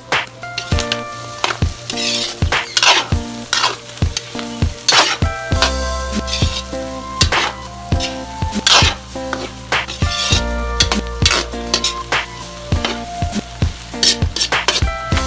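A metal spoon scraping and stirring diced pork lungs and heart as they fry in a metal wok, in repeated strokes about once a second.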